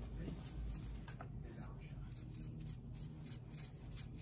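Faint, repeated scratchy brushing: a tint brush spreading toner through wet hair in quick strokes.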